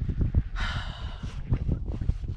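Wind rumbling on the microphone, with a short breathy exhale about half a second in that lasts just under a second.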